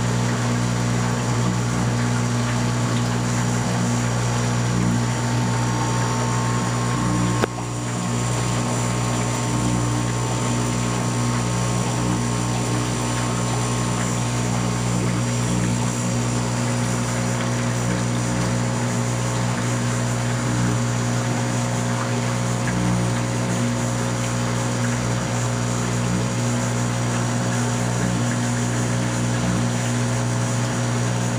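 Aquarium powerhead (AquaClear 201) humming steadily under a hiss of rushing water as it pumps water up through a LifeGuard FB-300 fluidized bed filter. There is a short click and dip about seven and a half seconds in.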